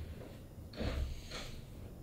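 A man's soft breathy exhales and a rustle of clothing as he shifts on the treatment table: two short soft sounds about a second in.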